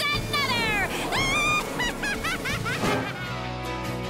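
A cartoon character's high, wordless voice sliding down and then up in pitch over background music. About three seconds in, a short musical theme takes over.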